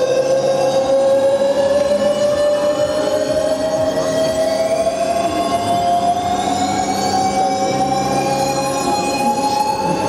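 Electric drive of a fairground ride whining, climbing slowly and evenly in pitch the whole time as it speeds up, with a fainter high whine falling in pitch around the middle.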